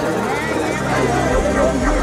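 Crowd of spectators talking and calling out over one another, with a steady low hum underneath.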